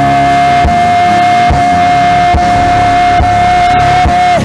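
Live gospel band music, with one long high note held steady over a regular beat.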